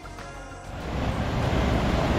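Background music trails off, then about two-thirds of a second in a loud, low, steady rush of wind on the microphone and breaking surf sets in.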